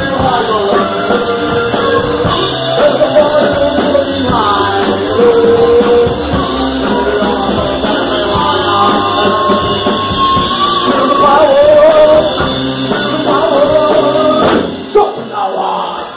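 Live blues-rock band playing loudly, with electric guitar, drum kit and a wailing sung vocal line. Near the end the band briefly thins out before the drums come back in.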